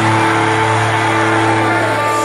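Melodic death metal: distorted electric guitars and bass hold one chord steadily, the song's final chord ringing out.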